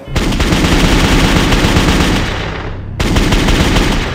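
Rapid automatic gunfire in two bursts. The first runs for about three seconds and dulls toward its end; the second starts abruptly right after it.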